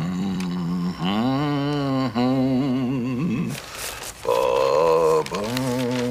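A man humming a tune in held, wavering notes, with a short break just past the middle. A brief newspaper rustle falls in that break, as the pages are turned.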